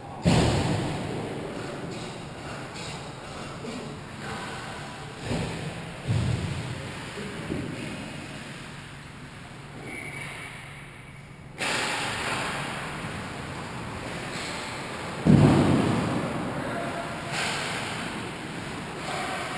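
Ice hockey rink sound during play: a steady hollow background broken by several sudden thumps that fade off over a second or two, the loudest about fifteen seconds in.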